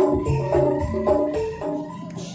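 Music played over a truck-mounted parade sound system: a quick run of melody notes over a low beat, fading out near the end.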